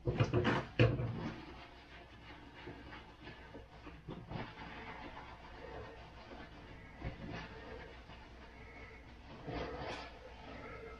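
Household handling noises at a kitchen counter: a quick run of knocks and clatters in the first second, then faint rustling with a few scattered soft clicks.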